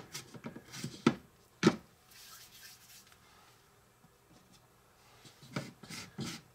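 Faint handling sounds of cookie dough being scooped from a small bowl with a spoon and rolled by hand, with a few light clicks in the first second and again near the end.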